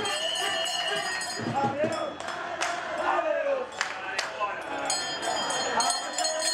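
Women footballers' voices shouting and calling out across the pitch, with a few sharp smacks in the middle.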